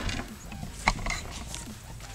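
A few light knocks and clicks from wooden 1x2 boards being handled and leaned against the garage door frame, the sharpest about a second in.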